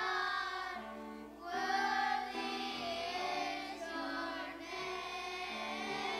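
Children's choir singing a song.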